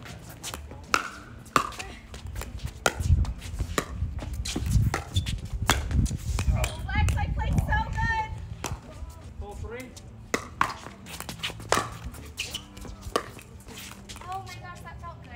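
Pickleball paddles striking the hollow plastic ball in a doubles rally: a series of sharp pops at irregular intervals. Players' voices call out briefly about halfway through, then the pops start again as play resumes.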